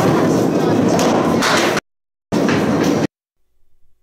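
A candlepin ball rolling down a wooden lane: a loud, steady rumble that cuts off abruptly after nearly two seconds, then returns for under a second before cutting off suddenly again.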